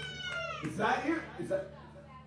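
A person's voice giving a few short wordless cries into a microphone, each bending up and down in pitch, while the band is not playing; a held note is fading out just as it starts.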